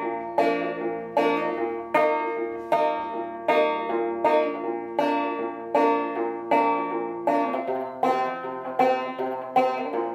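An 1888 Luscomb banjo, tuned about two frets below gCGCD, played two-finger style in the two-count rhythm: the thumb picks out the melody while the index finger plucks up on the first and second strings together. A steady beat of strong plucked notes, a little more than one a second, with lighter notes between.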